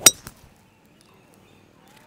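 A wood striking a golf ball off a tee: one sharp crack of impact right at the start, with a short ring, then faint outdoor background.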